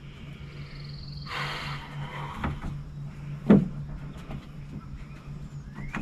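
Building materials handled on timber framing: a rasping scrape about a second and a half in, then one sharp knock a couple of seconds later, over a steady low hum.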